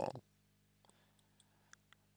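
Quiet pause with a few faint, short clicks spread over the last second and a half.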